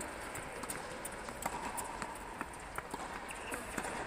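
Running footsteps of several players on an indoor hard tennis court: quick, irregular sharp taps over a steady background hum.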